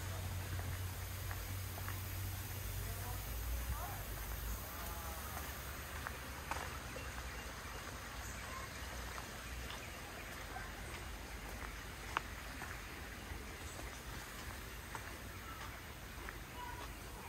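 Faint, indistinct voices over a steady low hum and background hiss, with a few scattered sharp clicks.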